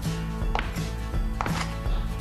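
A wavy-bladed crinkle-cut cheese knife chopping down through a block of hard cheese onto a wooden cutting board, with a few sharp knocks as the blade meets the board.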